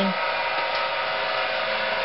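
A workshop machine's motor running with a steady whir and hum at an even level.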